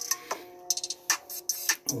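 Background music: a few held notes over a light clicking beat of about three clicks a second.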